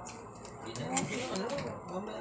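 Quiet, indistinct voices of people talking in a small room.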